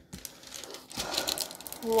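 Rapid, dense clicking and crinkling as hands work over a diamond-painting canvas and its plastic cover film; a woman's voice comes in near the end.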